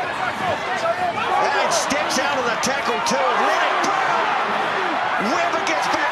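Stadium crowd cheering and shouting, many voices at once, with scattered sharp claps.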